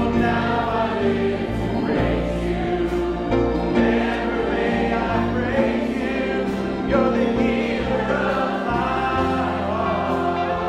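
Church congregation singing a slow worship song together, accompanied by acoustic guitars.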